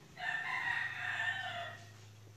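A single animal call lasting about a second and a half, over a low steady hum.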